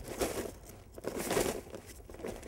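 Kite fabric crinkling and rustling in two bursts as hands shake and handle the leading edge around its inflate valve.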